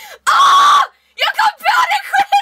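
A woman's short, loud shriek, held on one high pitch for about half a second, followed after a brief pause by quick chatter.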